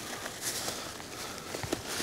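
Faint rustling of rolled-up tent fabric being handled and fastened with its hook-and-loop strap, with a few small ticks and a soft knock near the end.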